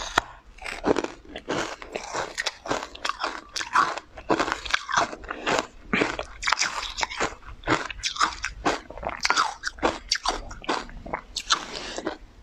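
Close-miked biting and chewing of a pink cake thickly coated in green powder: a dense, unbroken run of crisp crunching clicks.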